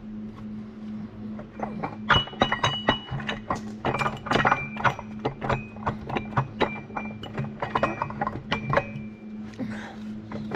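Steel gears on a truck transmission main shaft clinking and ringing against each other and the case as the shaft is worked free and lifted out, a rapid run of sharp metallic clinks from about two seconds in, over a steady low hum.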